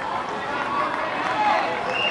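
Several voices shouting and calling over one another, high-pitched like children's, from players and spectators at a youth football game.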